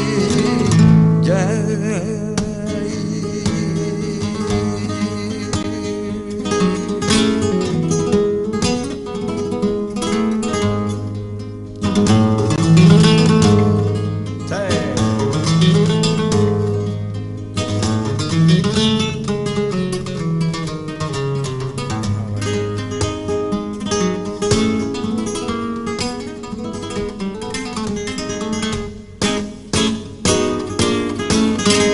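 Flamenco acoustic guitar playing soleares, plucked notes and strums.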